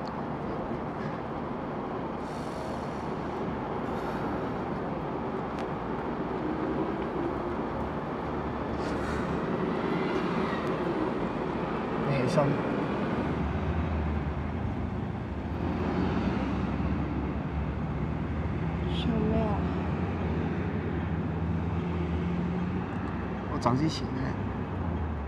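Steady city traffic noise, with a low engine-like drone joining about halfway through. A few short, soft vocal sounds come over it.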